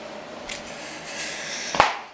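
Rustling handling and movement noise from a person getting up and moving about, building up and ending in one sharp thump near the end.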